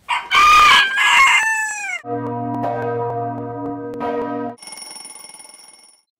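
A rooster crows once, the call falling in pitch, then an alarm-clock bell rings steadily for about two and a half seconds, followed by a fainter, high ringing that fades away.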